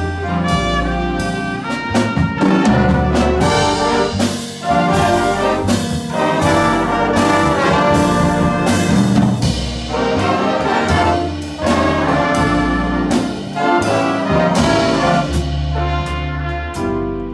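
Big band playing an instrumental passage of a jazz ballad arrangement, the brass section led by trumpets over upright bass and drums. The band plays in full phrases separated by short breaks.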